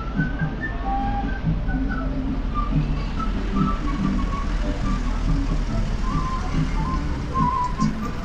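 A minibus engine running as the bus drives slowly past and pulls up close by, a steady low rumble. Over it plays background folk music with a flute-like melody.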